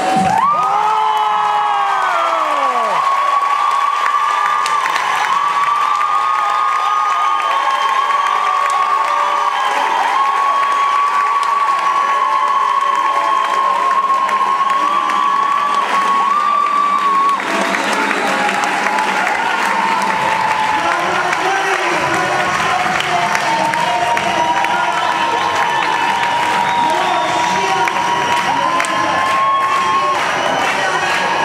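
Crowd cheering and applauding, with long high held cries running through it. The applause grows louder about seventeen seconds in. At the very start the routine's music ends in a falling glide.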